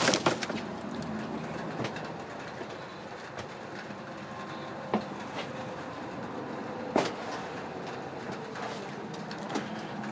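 Steady low background hum with faint handling noise, and two short sharp knocks about five and seven seconds in.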